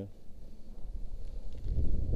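Wind buffeting the microphone, a low, uneven rumble that swells near the end.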